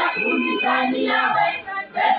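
Women's choir singing together, many voices in one melody, with a brief break between phrases near the end.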